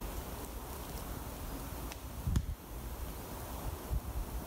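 Wind moving through the leaves and buffeting the microphone as a steady rushing noise, with one short low thump a little past two seconds in.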